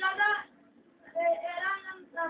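A child's high voice singing two short phrases, the second with a longer held note.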